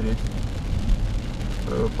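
Steady low rumble of a car driving on a wet highway, heard from inside the cabin: tyre and engine noise with rain on the car.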